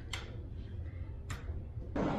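Two sharp clicks about a second and a quarter apart over a low, steady rumble.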